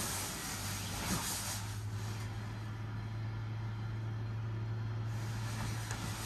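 The blower fan of an inflatable costume runs with a steady low hum and hiss, and the inflated fabric shell rustles as the wearer moves. There is a soft thump about a second in.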